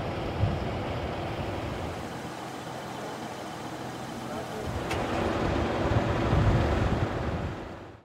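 Outdoor car ambience: a steady low rumble of cars with indistinct voices, a sharp click about five seconds in, then the rumble grows louder before fading out at the end.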